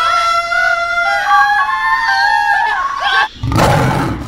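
Several men's voices holding long high sung notes over one another, some stepping higher partway through, in a contest to out-sing each other. About three seconds in, a harsh, loud scream cuts across them.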